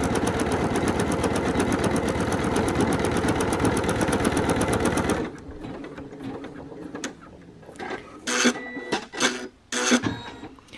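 Embroidery machine stitching a design into a T-shirt, a fast even rhythm of about ten needle strokes a second. About five seconds in the loud stitching stops, leaving quieter sound with a couple of brief noises near the end.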